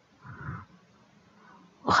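A glass pot lid set down onto a metal cooking pot, one soft, brief contact about half a second in.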